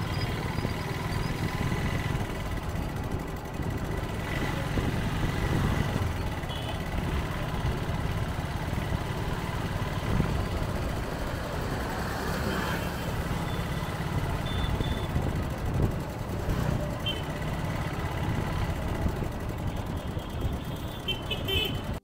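Busy city street traffic heard from a moving vehicle: a steady rumble of engines and road noise, with a few brief horn toots now and then.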